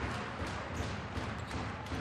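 Steady crowd noise in an indoor basketball arena, with repeated low thuds from the court.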